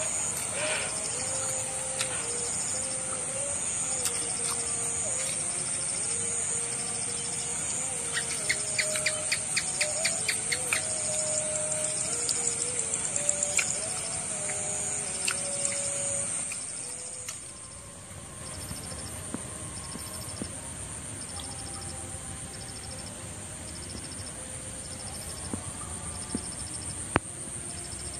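Field insects such as crickets chirping: a steady high-pitched buzz, with a second insect chirping in regular pulses just below it, and birds calling now and then. About two-thirds of the way in, the sound grows quieter.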